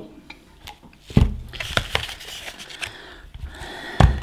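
Objects handled on a plastic-covered table: one solid knock about a second in, then light clicks and a faint plastic rustle as the battery packs and a kitchen scale are moved about.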